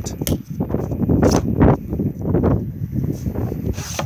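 Handling and rustling noise with several sharp clicks, as a gloved hand works a plastic water filler cap and lifts the hinged plastic flap of an exterior socket housing. The last click comes near the end, as the flap opens.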